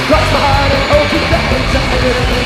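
Punk rock band playing loud and steady.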